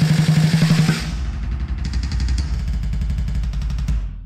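A slow-blues band backing track with no lead guitar, playing its closing flourish: a fast drum roll under a held band chord with cymbals. It stops sharply near the end and rings out briefly.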